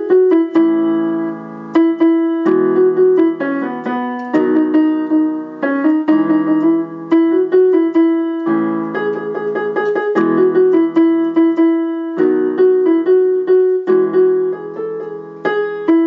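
Casio lighted-key electronic keyboard played with a piano voice: left-hand chords held under a right-hand melody, the chords changing every two seconds or so through the song's A, E, B and C-sharp minor progression.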